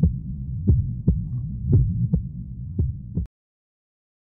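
Low, throbbing double thumps like a heartbeat, about one pair a second, over a low hum. The sound cuts off suddenly a little after three seconds.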